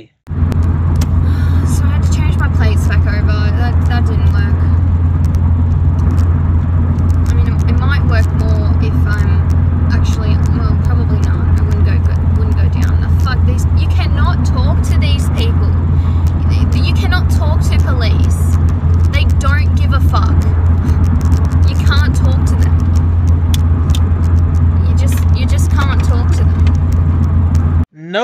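Steady low rumble of a car being driven, heard from inside the cabin, with a person talking over it.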